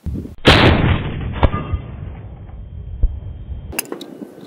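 A .30-06 Mauser bolt-action rifle fired once about half a second in, the report trailing off in a long echo. A second sharp crack follows about a second later.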